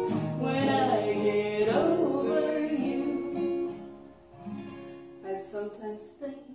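Acoustic guitar strummed under a woman and a girl singing a held line together. The singing ends about two seconds in, and the guitar carries on alone, quieter from about four seconds in.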